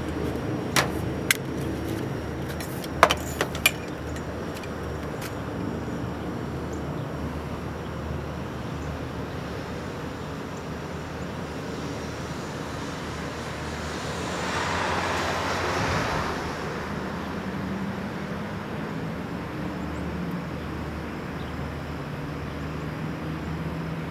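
Electric lift motor of a portable wheelchair and scooter lifting platform running steadily as the platform lowers. There are a few sharp clicks in the first four seconds and a rise of hissing noise about fifteen seconds in.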